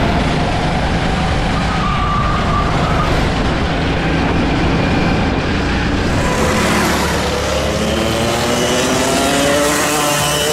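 Kart engine heard onboard at speed under heavy wind noise on the microphone. From about six and a half seconds in, its pitch rises steadily as the kart accelerates down the straight.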